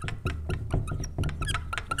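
Dry-erase marker writing on a whiteboard: a quick, irregular run of taps and scratchy squeaks as the letters are drawn.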